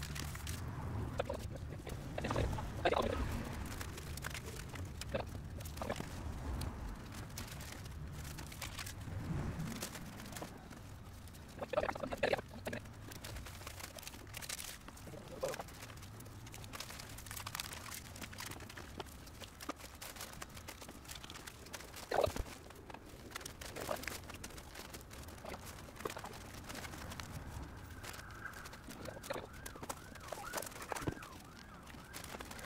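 Scattered rustling, scraping and knocking as insulation board offcuts and a foil-covered wheel arch box are handled against a van's bare metal wall, with a few louder bumps spread through.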